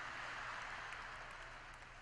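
Faint audience applause after a punchline, an even hiss that fades away.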